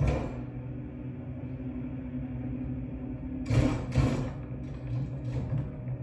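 Movie soundtrack played from a TV: a low, steady droning score with sudden thuds at the start and twice more about three and a half to four seconds in.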